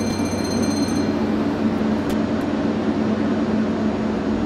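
Steady, loud mechanical rumble with a low hum. A high ringing tone fades out about a second in.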